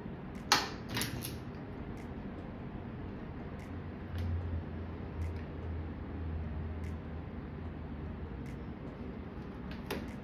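Small handling clicks from painting work: one sharp click about half a second in and a softer one just after, then scattered faint ticks, over a low hum that swells in the middle.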